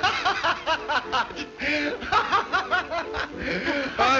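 Hearty laughter, one short burst after another with no break.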